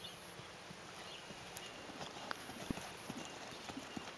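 Faint, soft hoofbeats of a ridden Thoroughbred horse trotting on a sand arena, the footing muffling each footfall into a dull thud.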